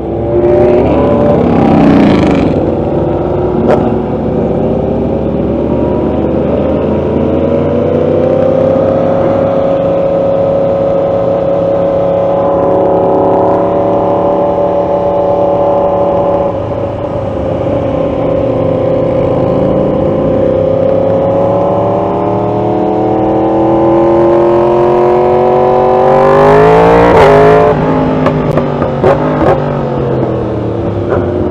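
Sportbike engine, the Yamaha R1's inline-four, heard from the riding position while riding in traffic: the revs climb at the start, hold steady at cruise with a brief dip past the middle, then rise sharply in pitch under acceleration near the end before the throttle closes.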